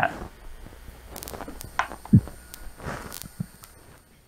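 A person climbing down off a stool and shifting about: shuffling, clothing rustle and a few light knocks, with a dull thump about two seconds in.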